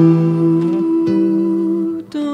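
Nylon-string acoustic guitar playing a slow, lullaby-like passage: a chord left to ring, with a new note coming in about a second in.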